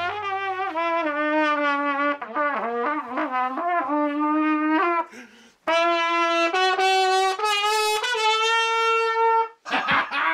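A lone brass instrument playing a melody. Held notes and a quick run of notes come first, then a brief break about five seconds in, then held notes stepping higher until it stops just before the end.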